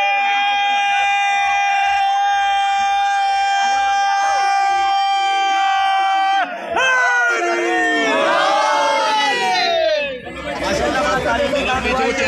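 A man's voice holding one long high call for about six seconds, then several voices calling out in falling glides, and a crowd shouting and chattering together over the last two seconds.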